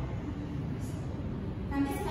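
A steady low rumble of background noise in a pause in the talk, with a woman's voice coming back briefly near the end.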